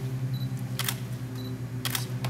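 Two camera shutter clicks about a second apart, each about half a second after a short high beep like a focus-confirm signal, over a steady low hum.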